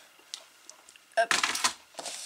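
Light clicks and taps of card pieces and craft tools being handled on a cutting mat: a couple of faint ticks, then a short cluster of clicks about a second in.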